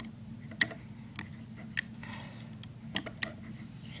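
About five light, sharp clicks at uneven intervals: a loom hook and rubber bands tapping against the plastic pegs of a Rainbow Loom. A low steady hum runs underneath.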